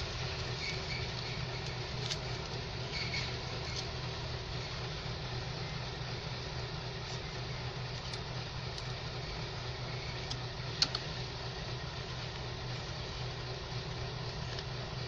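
A kitchen knife worked down the inside wall of a plastic plant pot to loosen the soil: a few faint clicks and one sharp click late on, over a steady low hum.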